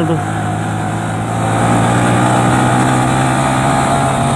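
A Yamaha Vixion's single-cylinder engine running steadily under way, with wind and road noise; the engine gets a little louder about a second and a half in.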